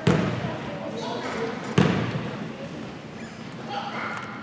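A basketball bouncing twice on a gym floor, about two seconds apart, each bounce echoing through the gym.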